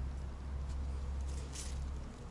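A brief, faint rustle of pepper-plant leaves brushed by a hand about one and a half seconds in, over a low steady rumble.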